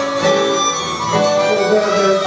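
Harmonica playing held blues notes over a strummed acoustic guitar.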